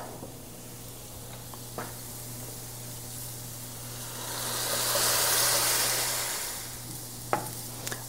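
Food sizzling in hot skillets, with the sizzle swelling to its loudest for a few seconds near the middle as hot chicken broth is poured onto toasted orzo, then easing off. There is a faint click twice.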